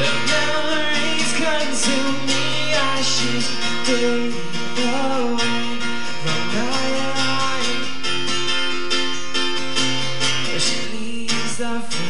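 Acoustic guitar strummed in a steady rhythm, with a male voice singing along.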